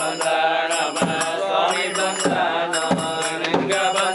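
Voices chanting a repetitive Hindu devotional chant, with a percussive strike roughly every two-thirds of a second.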